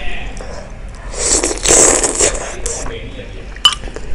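Close-miked eating sounds: a loud, noisy slurp of spicy broth lasting about a second, in the middle. Near the end, a single sharp clink of the metal spoon against the ceramic bowl.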